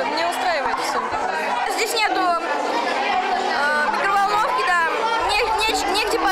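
Chatter of many children's voices talking at once, no single voice standing out.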